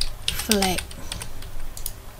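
Computer keyboard keys clicking in a series of short, irregular taps.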